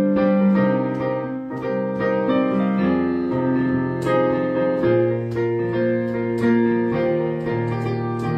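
Digital piano played solo: slow, sustained chords, a new chord struck about every second.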